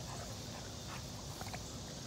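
Quiet backyard ambience: a steady faint background with a few soft ticks scattered through it.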